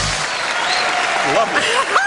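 Studio audience applauding as a film clip's music cuts off, with voices coming in over the applause about a second and a half in.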